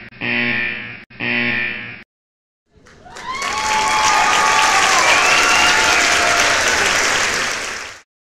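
A short pitched sound repeated three times in a row, then about five seconds of crowd applause and cheering with rising whistles and shouts. The applause fades out at the end.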